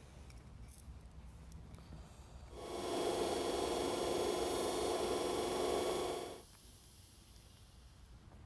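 NetGain Warp 11 brushed DC electric motor spun unloaded on a 12-volt battery: it comes up to speed about two and a half seconds in, runs for about four seconds with a steady whine and hiss, then cuts off.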